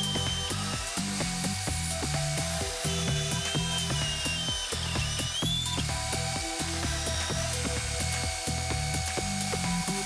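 Belt sander running with a small wooden block pressed against its belt, sanding the block's corners.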